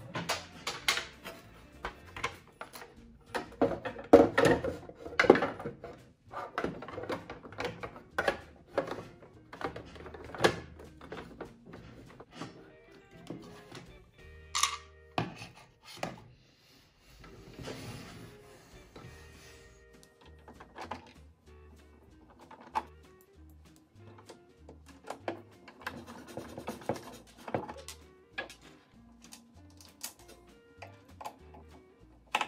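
Plastic clacks and knocks of a sewing machine's housing panel being handled and fitted onto the metal frame, loudest and most frequent in the first six seconds, over background music.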